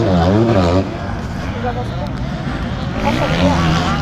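Young men talking, with motorcycle engine noise behind the voices.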